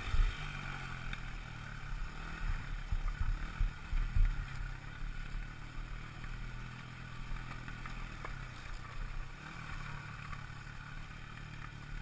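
KTM dirt bike engine running at fairly steady, low revs over a rough dirt trail, with knocks and thumps from the bumps. The thumps are strongest at the start and about four seconds in, and the ride is smoother in the second half.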